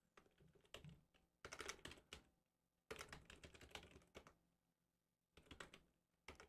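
Faint computer keyboard typing, several short bursts of keystrokes with pauses between, as a web search is typed in.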